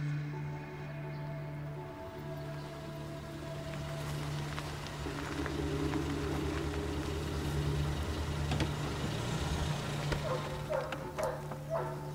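Background score of long held low synth notes that change every few seconds and swell in the middle, with a few faint clicks near the end.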